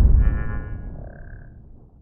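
Logo-reveal intro sting: a deep boom rumbling away and fading out over about two seconds, with a brief shimmering chime-like tone over it near the start.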